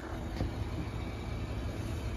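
A steady low rumble like an idling vehicle engine, with a faint click about half a second in.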